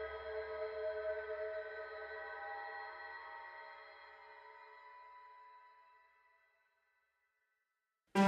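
The closing held chord of a deathcore track ringing out, its steady tones and low rumble fading slowly away to silence about six seconds in.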